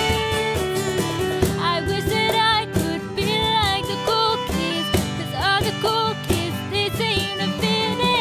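Country-folk instrumental passage: an acoustic guitar strumming chords under a violin lead that slides between notes with vibrato, over regular cajon hits.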